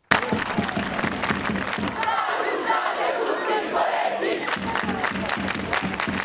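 Large crowd of students clapping and shouting, many hands clapping in a dense patter over a mass of raised voices.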